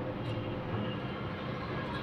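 Continuous garment fusing machine running with a steady mechanical hum.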